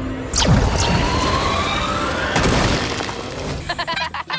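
Cartoon sound effects over background music: a loud crash about a third of a second in, followed by a crumbling, rumbling noise with a slowly rising tone that fades out near the end.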